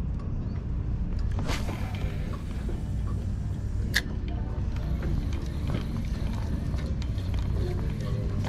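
A spinning reel being cranked to work a topwater spook lure back across the water, over a steady low rumble. There is a short whooshing stripe about a second and a half in and a sharp click about four seconds in.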